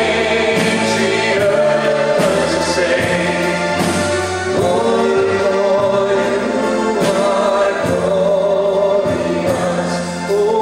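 Live Christian worship band playing a song: singing over electric guitar, bass, keyboard and a drum kit.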